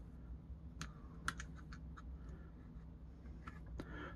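Faint, scattered clicks and taps of small hard plastic parts as a toy smelting cup is fitted into a plastic toy tool chest, the sharpest click about a second in.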